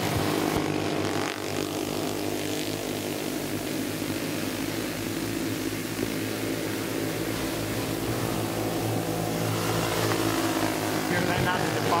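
Several go-kart flathead engines running at racing speed on a dirt oval, heard as a steady drone of overlapping engine tones. Commentary starts near the end.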